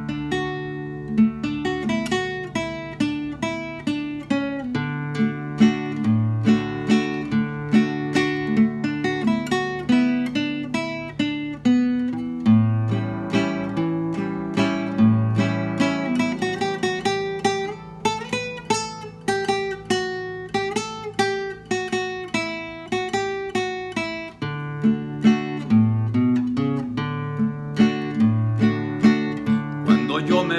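Acoustic guitar played solo, strummed chords in a steady rhythm over a moving bass line, as a song's instrumental introduction.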